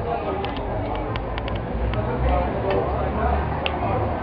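A pool shot: the cue strikes the cue ball, followed by a quick run of sharp clicks as the pool balls knock together in the first second and a half, then a few more spaced clicks, the last near the end.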